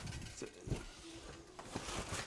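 Faint handling noise: a few soft clicks and knocks as a plastic toy pony is turned over in the hands.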